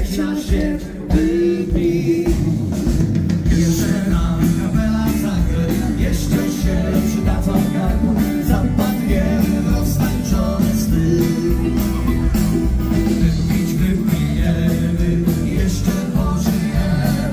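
A live country band playing through a PA, with guitar and a drum kit keeping a steady beat.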